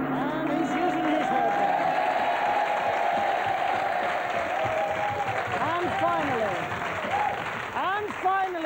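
Studio audience applauding and cheering, with shouts and whoops near the end. Under the first two seconds, the last of a large gong's ring fades out.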